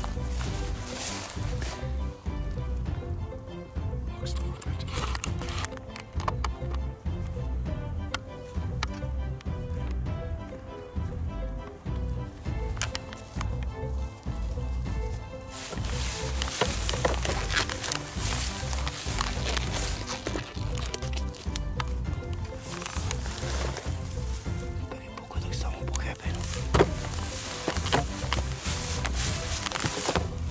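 Background music with a steady beat, becoming fuller and brighter about halfway through.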